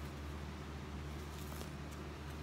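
Quiet room tone: a steady low hum with a couple of faint ticks near the end.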